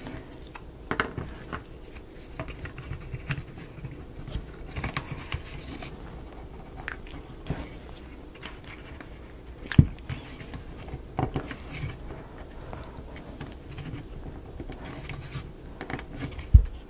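Small clicks, taps and scrapes of laser-cut plywood model parts being handled and fitted together, with one sharper knock about ten seconds in.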